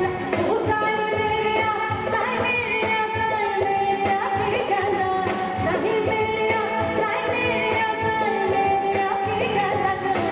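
A woman singing live into a microphone with band accompaniment. She holds long, ornamented notes over a steady drum rhythm.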